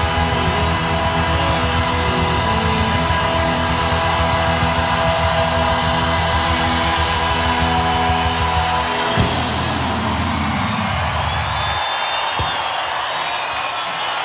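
Live rock band holding a long final chord, with a cymbal crash about nine seconds in as the chord ends; the band's sound then dies away over a couple of seconds, leaving crowd noise.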